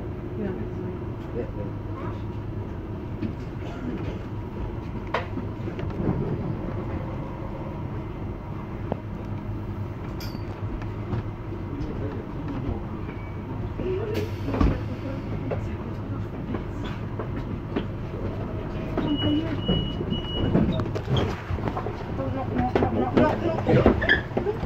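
AOMC metre-gauge electric train heard from the cab while running slowly on street track: a steady low hum with scattered clicks and rattles.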